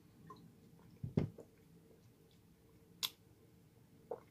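Quiet mouth sounds of a man tasting a mouthful of pear cider: a soft smack about a second in and a sharp click of the lips or tongue about three seconds in.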